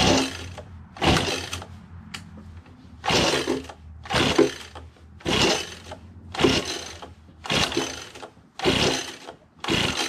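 Echo PB-2100 leaf blower's small two-stroke engine cranked by its recoil pull-starter: about nine rasping pulls, roughly one a second, turning the engine over without it catching. It puffs smoke but won't fire. The owner suspects the ignition timing is off from a sheared key on the blower fan, or too much penetrating oil inside.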